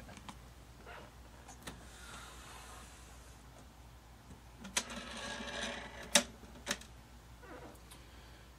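The Dual 1229's hinged plastic dust cover being lifted open: a click, about a second and a half of rubbing and handling noise, then two sharper clicks.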